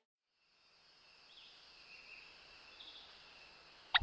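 Faint forest ambience of steady high insect calls with a few short bird chirps, fading in after about a second of silence.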